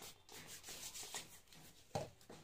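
Hands rubbing together and over skin: a faint, repeated soft swishing, with one short knock near the end.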